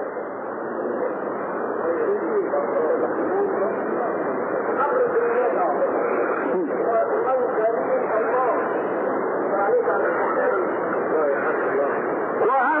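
Many voices of a live audience at a Quran recitation calling out and murmuring at once, heard through an old, muffled low-fidelity recording.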